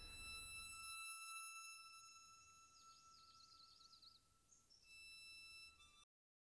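Near silence with faint background music: soft held high notes and a brief wavering high line in the middle, fading, then cutting off suddenly at the end.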